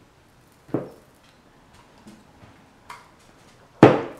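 Mouth sounds of someone eating a chili-coated hard-candy lollipop: a short smack about three-quarters of a second in, a faint click near three seconds, and a louder sharp smack just before the end.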